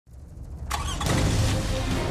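Vehicle engine sound effect: a low engine rumble that swells into louder revving about two-thirds of a second in, with music coming in underneath.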